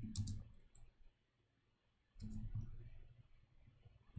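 Faint computer keyboard keystrokes: a few clicks near the start, a stretch of near silence, then another short cluster about two seconds in.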